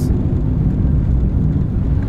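Steady low rumble of a moving car's engine and road noise, heard from inside the cabin.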